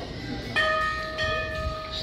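A bell struck about half a second in, ringing on with a steady tone and several higher overtones.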